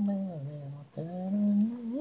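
Unaccompanied solo vocal, an isolated a cappella track: one voice carries a falling phrase, breaks briefly about a second in, then holds a longer note that rises near the end.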